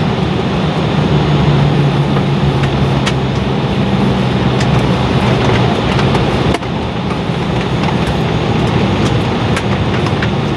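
Inside the cabin of an Embraer E-175, a steady rushing hum with a low drone from its GE CF34 engines at idle as the jet rolls slowly on the ramp. A single click comes about six and a half seconds in.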